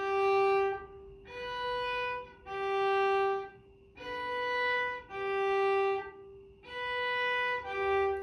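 Solo cello bowed slowly, seven sustained notes of about a second each, alternating between a lower and a higher pitch. This is slow intonation practice of the spacing between first and third finger.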